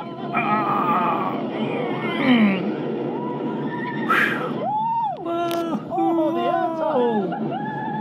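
Roller coaster riders screaming and yelling through the big drop and the climb after it, several long wavering cries over a steady rush of wind and train noise.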